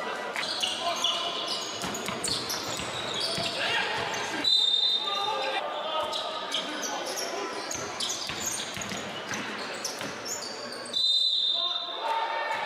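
Basketball being played on a hardwood gym floor: many short high squeaks and knocks from sneakers and the bouncing ball, with voices echoing in the large hall. A brief high steady tone sounds about halfway through and again near the end.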